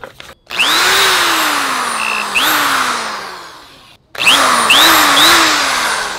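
Handheld electric drill run in bursts: its motor whine climbs quickly as the trigger is squeezed, then sags slowly. It is squeezed again midway through the first run and dies away near the fourth second, then restarts with three or four quick trigger squeezes about half a second apart.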